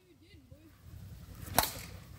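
A single sharp click or crack about one and a half seconds in, over a low rumble.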